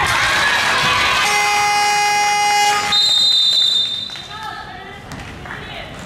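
Gymnasium buzzer sounding one steady, harsh note for under two seconds, followed at once by a sharp referee's whistle blast of about a second, as play stops. Players and spectators are shouting around them.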